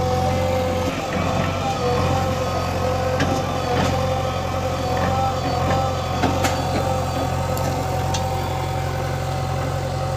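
Diesel engines of a JCB 3DX backhoe loader and a Farmtrac tractor running steadily, with a steady whine over them and scattered sharp clicks and knocks.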